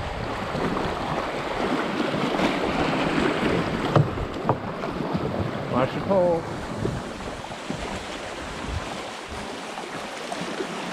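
Fast, shallow river water rushing through a riffle around a small rowed boat, a steady wash of noise with a few sharp knocks about four seconds in.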